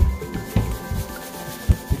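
Rubber balloon rubbing and bumping against the microphone, a rustling rub broken by several low thuds.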